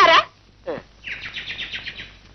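A bird twittering: a quick run of high chirps, about ten a second, through the second half, after a short falling glide a little before.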